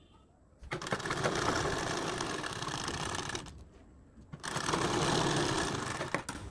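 Domestic sewing machine stitching a seam through layered fabric: it runs for about three seconds, stops for about a second, then runs again.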